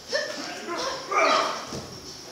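Short vocal grunts of exertion from people sparring. The loudest is a breathy grunt a little past a second in.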